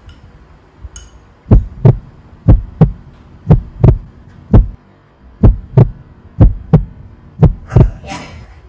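Heartbeat sound effect: deep paired thuds, lub-dub, about once a second, starting about one and a half seconds in.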